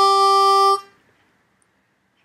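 Suzuki Manji 10-hole diatonic harmonica in G holding a final note of a melody phrase, which stops a little under a second in and dies away.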